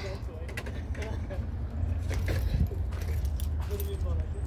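Outdoor background: a steady low rumble with faint scattered clicks and clinks, and a faint voice now and then.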